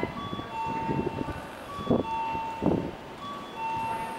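A repeating electronic chime on the station platform, a short high note then a longer lower one, recurring about every second and a half. Under it runs the low running noise of an arriving electric commuter train, with two loud clacks about two seconds in.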